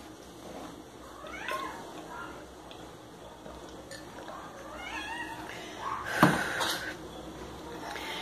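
Two short gliding animal calls, one about a second and a half in and another about five seconds in. A sharp knock comes a little after six seconds and is the loudest sound.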